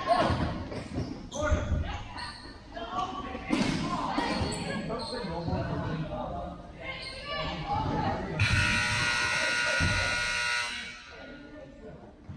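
Futsal game in a large echoing hall: a ball thudding and bouncing, short high shoe squeaks and players' shouts. About eight and a half seconds in, a harsh, steady scoreboard buzzer sounds for a little over two seconds and cuts off.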